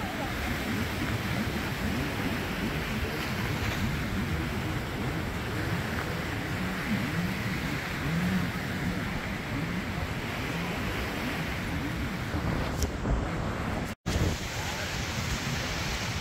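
Steady beach ambience of wind and surf, with wind rumbling on the microphone and faint distant voices. The sound drops out for an instant near the end.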